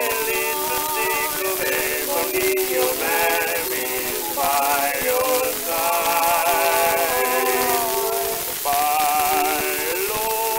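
A 1920 Columbia 78 rpm acoustic recording of a male tenor duet with orchestra accompaniment. The voices sing in phrases with vibrato and short breaks between lines, over a steady surface hiss. The sound is thin and lacks highs, as acoustic-era discs do.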